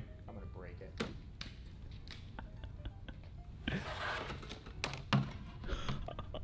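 Scattered knocks and clicks from a plastic shop basket loaded with swimbait packs being hoisted on a bending rod, with a short strained breath and grunt of effort about halfway through.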